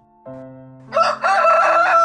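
Rooster crowing: one loud, long cock-a-doodle-doo starting about a second in, over soft background music.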